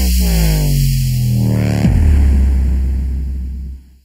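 Dubstep track: heavy sub-bass under a synth bass that slides down in pitch, with a new bass note hitting about two seconds in, then the music fades away at the end.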